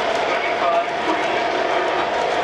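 O gauge model train cars rolling past on three-rail track, with a steady drone from an MTH diesel locomotive's onboard engine-sound system.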